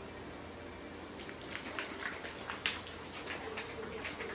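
Homax wall-texture aerosol can being shaken, its mixing ball rattling inside in faint, quick, irregular clicks that start about a second and a half in.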